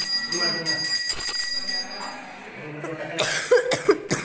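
A puja bell rings steadily behind a few voices and stops about halfway through. Near the end come several loud rubbing knocks of fingers handling the phone.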